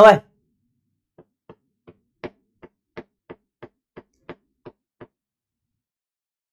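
About a dozen light, evenly spaced taps on a hard surface, roughly three a second, starting about a second in and stopping about a second before the end.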